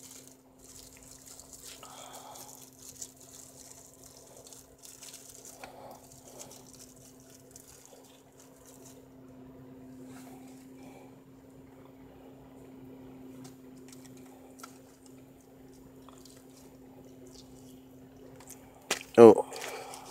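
Thin plastic bag crinkling and lime wedges being handled and squeezed over tacos, with small scattered ticks and rustles. A steady low hum runs underneath, and a short vocal sound comes near the end.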